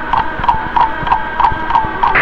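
Clock ticking, about three sharp ticks a second, each with a short ringing tone, over a faint held tone.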